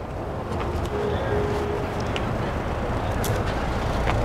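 Parking-lot traffic ambience: a steady low rumble of passing and idling cars, with a few faint footstep ticks.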